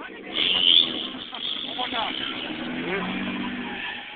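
Car drifting: a loud tyre squeal about half a second in, then the engine running under throttle with a steady note.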